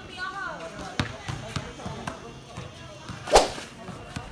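A brief voice at the start, two dull knocks, then one loud, sharp smack about three seconds in.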